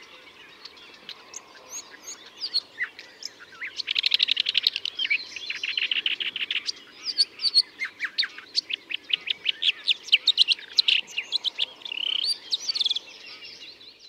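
Red-backed shrike singing its quiet twittering song: a fast, varied run of chattering, trilled and whistled notes, packed with imitations of other birds' calls.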